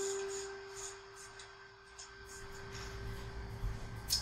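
A single note G played on an electronic keyboard, sustaining as one steady tone and slowly fading. This is the second of the two opening melody notes, C then G. A faint low rumble rises near the end.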